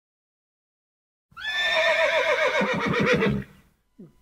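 A horse whinnying once: a single long, quavering call that starts about a second in, rises at first, and trails off after about two seconds.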